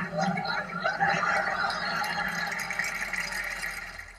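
A man laughing, breathy and without words, trailing off toward the end.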